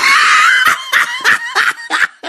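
A high-pitched scream that wavers in pitch, breaking after about half a second into short repeated bursts like laughter.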